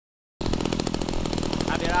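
Small air-cooled single-cylinder petrol engine on a homemade tube frame running fast and steady, with a man's voice starting near the end.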